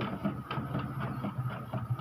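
Epson L360 inkjet printer running its print mechanism, printing a test page after a printhead cleaning: a steady low motor hum with faint rapid ticking from the carriage and paper feed.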